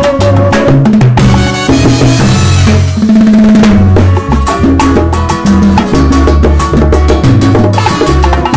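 Live salsa band playing, with hand drums struck in a fast pattern over a moving bass line; a bright wash of cymbal-like noise rises about a second in.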